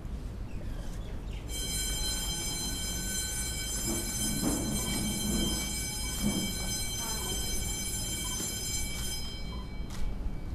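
A steady, high-pitched tone with a buzzy edge starts suddenly about a second and a half in, holds one unchanging pitch and cuts off near the end, over faint low voices.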